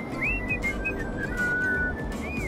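Whistling over light background music: a single thin tone that swoops up and down, then holds a few notes that step down in pitch.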